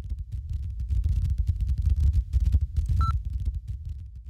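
Low rumbling noise with dense crackle and clicks, the worn optical soundtrack of old newsreel film running in before the music starts. A brief high beep about three seconds in.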